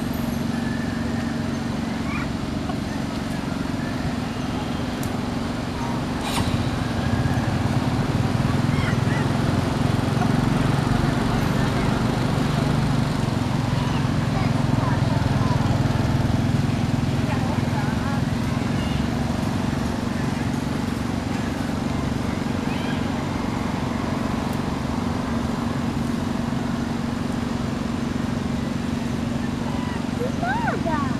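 People talking in the background over a steady low hum, louder from about six seconds in until near the middle, with a few faint short squeaks.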